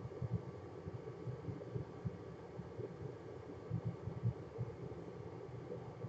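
Quiet room tone: a low steady hum with faint, irregular low rumbles and no distinct event.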